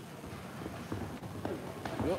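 Boxers' footwork on the ring canvas with a few soft knocks of gloved punches, one just before the end.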